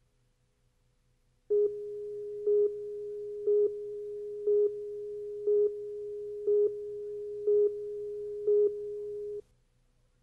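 Videotape leader countdown tone: a steady single-pitched tone with a louder beep once a second, eight beeps in all, counting down on the slate. It starts about a second and a half in and cuts off suddenly shortly before the end, leaving the last count silent.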